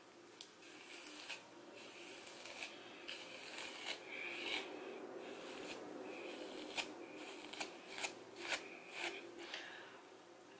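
Wide-tooth comb dragged through thick, dry natural hair as it is combed out and detangled: faint, irregular scratchy strokes with scattered sharp clicks.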